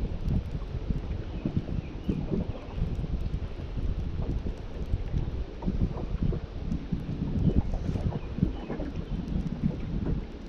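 Gusty wind rumbling and buffeting on the microphone, uneven throughout, over small splashes of choppy lake water around the boat.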